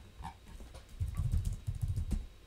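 Computer keyboard typing: a quick run of dull keystrokes starting about a second in.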